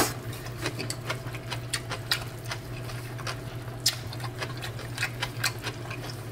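Soft, irregular clicks of chewing and mouth noises, several a second, over a steady low hum.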